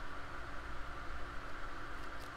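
Steady low hum and hiss of room noise, with no distinct event standing out.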